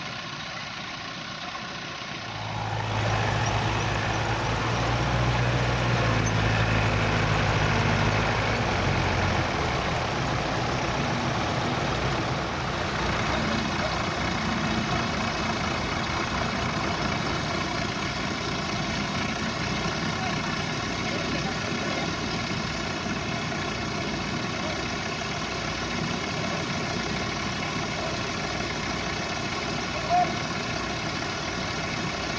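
Tractor engine running steadily at idle. About three seconds in it becomes louder with a deep hum that lasts until about nine seconds in, then settles back to an even run.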